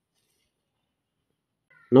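Near silence, with a voice starting to speak just before the end.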